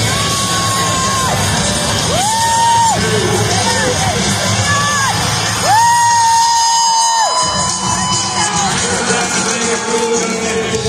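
Four long whoops from a spectator, each one held at a steady pitch, the last and longest about six seconds in. They sound over loud music from the arena speakers and a cheering crowd.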